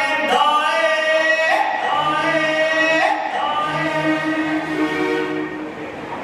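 Devotional group singing in long held notes, the melody stepping to a new pitch every second or so.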